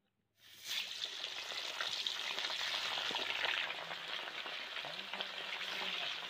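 Fish pieces slid into hot oil in a kadai start sizzling about half a second in, then keep frying with a steady, dense sizzle.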